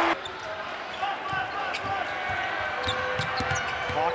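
Arena game sound: a basketball being dribbled on the hardwood court, short repeated thuds, over a murmur of crowd voices.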